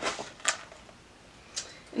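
A cardboard mailer box being opened by hand: a brief scrape, then a sharp snap about half a second in as the lid comes free.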